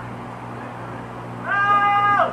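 A single loud, drawn-out cry at a nearly steady pitch, meow-like, starts about a second and a half in and runs on just past the end.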